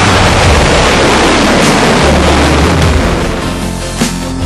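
Crew Dragon capsule's SuperDraco abort engines firing in a pad abort test: a loud rushing noise that starts suddenly and fades over about three seconds, with a music soundtrack underneath.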